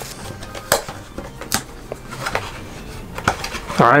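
A cardboard trading-card box being handled and opened by hand: rustling of cardboard and plastic with about four sharp clicks spread across it.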